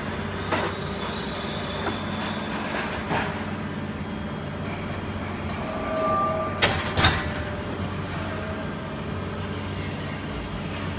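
Plastic injection moulding machine running with a 24-cavity preform mould: a steady mechanical hum, with a few sharp metallic knocks and a short whine about six seconds in, followed by two knocks close together about a second later.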